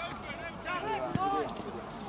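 Voices shouting and calling at a rugby match, with a single sharp knock a little over a second in.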